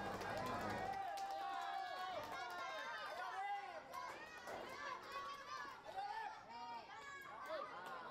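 Faint, overlapping high-pitched shouts and calls from many voices around a football pitch, young players and spectators calling out at once, with no single voice standing out.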